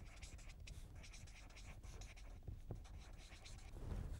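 Felt-tip marker writing on paper: a quick run of faint, scratchy strokes as a short phrase is written out by hand.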